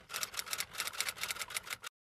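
Typewriter key sound effect: a rapid run of light clicks, about ten a second, that cuts off suddenly just before the end.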